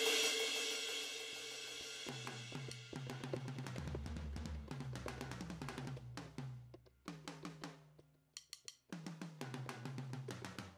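Sampled drum-machine sounds from a Maschine drum kit, triggered one after another from pads: a hit that rings out at the start, then a quick run of separate drum strikes. A deep bass drum joins at about four seconds and runs for a few seconds. The hits pause briefly near eight seconds, then start again.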